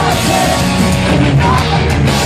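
A pop-punk band playing live and loud through a festival PA, with electric guitar, bass, drum kit and a singer, heard from inside the crowd.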